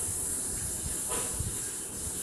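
Steady high hiss with a low rumble underneath.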